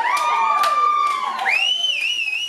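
Several voices whooping and cheering in overlapping rising and falling glides, with a high wavering whistle coming in about one and a half seconds in.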